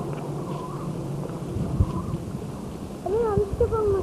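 A high-pitched call that wavers up and down in pitch, starting about three seconds in, over the steady hum and hiss of an old video recording, with a single thump about two seconds in.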